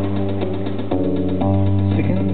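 Live band playing an instrumental passage on electric and acoustic guitars over a held bass note, the chord changing twice.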